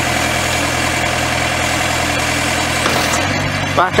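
The 48 hp Yanmar diesel engine of a Protech EVO2 tracked post driver running steadily; its note shifts about three seconds in.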